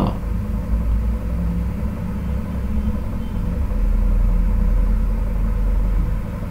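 A steady low rumble with a faint hum over it, growing somewhat louder about four seconds in.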